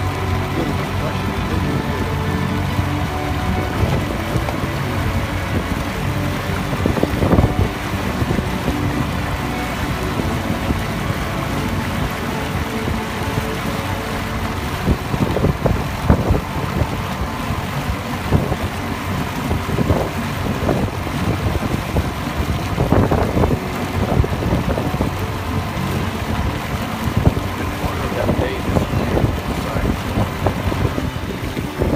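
Outboard motor of a small boat running steadily under way, with irregular knocks of the hull hitting the chop and wind buffeting the microphone.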